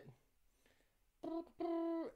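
Quiet room tone, then about a second in a man humming two short steady notes at the same pitch, the second held longer.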